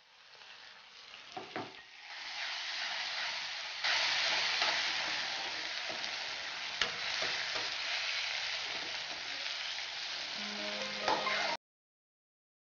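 Brinjal, onion and fresh tomato sizzling in hot oil in a frying pan as they are stirred, with a few clicks of the utensil against the pan. The sizzle builds over the first couple of seconds, jumps louder about four seconds in, and cuts off abruptly near the end.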